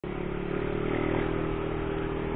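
Motorcycle engine running at a steady cruising speed, heard from on the bike, with road and wind noise underneath.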